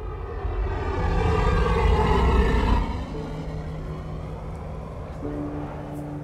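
Opening background music: a low rumbling swell builds for about two and a half seconds and fades, then gives way to held low drone notes that gather into a sustained chord.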